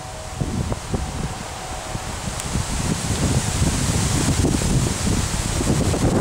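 Wind gusting over the microphone as an uneven low rumble, with leaves rustling in the tree canopy. It grows louder over the first few seconds.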